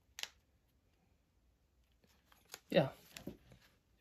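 A single short click just after the start as the leather back piece is pushed into the plastic phone case.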